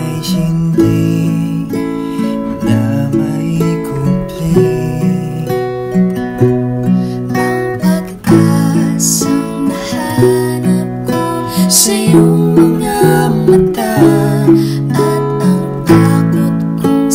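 Acoustic guitar and ukulele strummed together, playing a slow ballad accompaniment. There is a brief break about eight seconds in, after which the strumming comes back fuller and louder.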